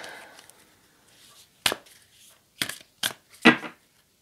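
A tarot card deck being handled: four sharp snaps or taps in the second half, the last the loudest.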